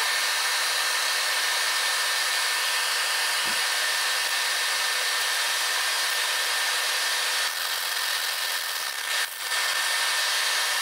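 2K aerosol spray paint can hissing steadily as it sprays, with a brief break near the end.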